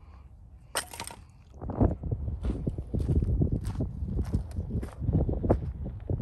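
Footsteps crunching on gravelly dirt as someone walks at a steady pace, starting a little under two seconds in, with wind rumbling on the microphone.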